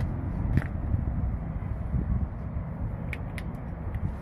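Steady low outdoor background rumble with a few faint clicks.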